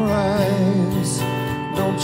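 Acoustic guitar played with a man singing a held, wavering note over it in the first second.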